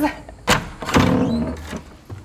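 Wooden panelled door being unlatched and pushed open: a sharp click about half a second in, then a louder, longer sound as the door swings open.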